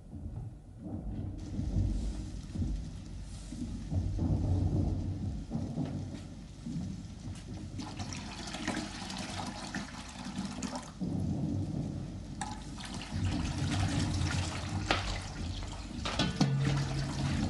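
Distant artillery fire heard as a low, ongoing rumble. From about halfway through, water splashes and pours in a washbasin.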